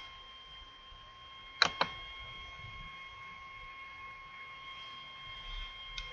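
Two quick, sharp computer clicks about a second and a half in, over a faint, steady high-pitched electrical whine.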